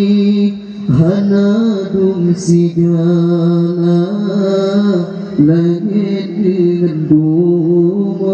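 A man singing an Acehnese qasidah (devotional song in praise of the Prophet) into a microphone, holding long, wavering, ornamented notes, with three short breaks for breath.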